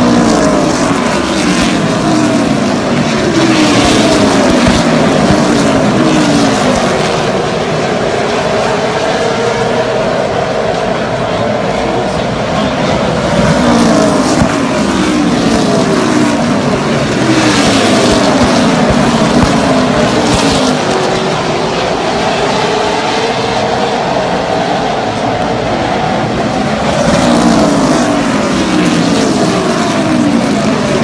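Super late model stock cars' V8 engines running laps on the oval, several at once. The pitch rises each time the pack accelerates past, in waves about every thirteen seconds.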